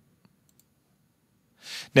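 Two faint computer mouse clicks in the first second, then a short breath drawn in just before the voice resumes.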